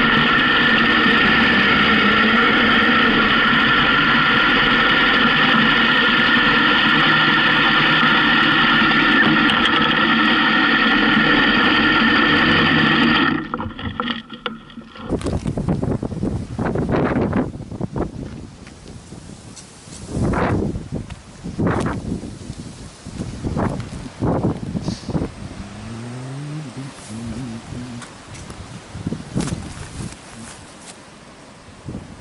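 Honda CB750K's inline-four engine running steadily under way, mixed with wind rush, until it cuts off abruptly about thirteen seconds in. After that, irregular gusts of wind buffet the microphone.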